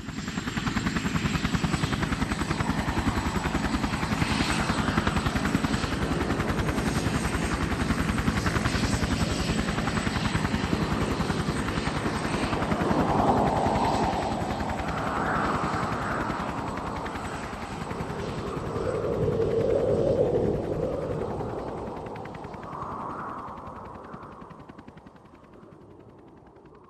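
Helicopter rotor chopping in a fast, steady pulse with a high, steady whine over it, swelling in places and fading out near the end.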